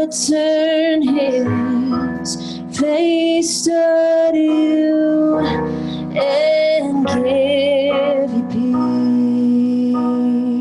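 Worship song: a woman singing long, held notes with vibrato over electric keyboard chords.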